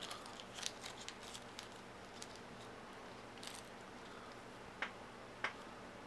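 Faint, scattered light taps and clicks of small die-cut cardboard game counters being handled and set down on a wooden tabletop. Two slightly sharper taps come near the end.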